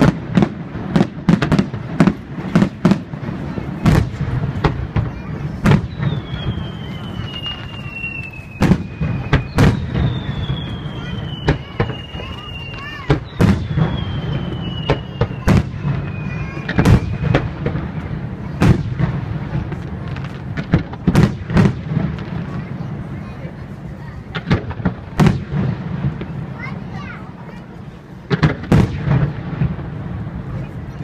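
Aerial fireworks bursting in quick succession, dozens of sharp bangs through the whole stretch. In the middle come three long whistles, each falling in pitch.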